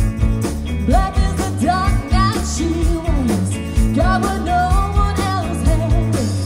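A rock band playing live: a steady drum beat and bass under a lead melody that glides up and down between held notes.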